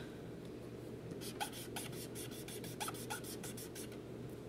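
Ohuhu marker's chisel tip rubbing quickly back and forth on paper, laying down ink in a run of short, even strokes, several a second, starting about a second in.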